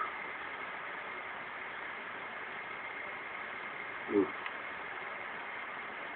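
Steady, even background hiss with a faint high tone running through it, and a man's brief 'ooh' about four seconds in.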